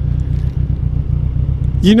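Motorcycle engine idling, a steady low rumble; a man's voice starts just before the end.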